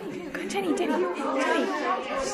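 Indistinct chatter: several teenagers' voices talking over one another.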